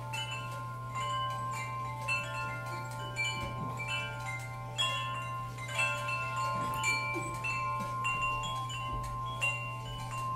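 Small metal chimes struck in an irregular tinkling cascade. The notes come at many different pitches and ring on, over a steady low hum.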